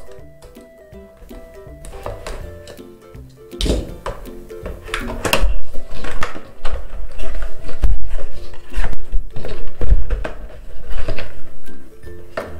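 Background music playing throughout. From about four seconds in, repeated knocks and rustles of a cardboard product box being opened by hand and its plastic insert tray lifted out.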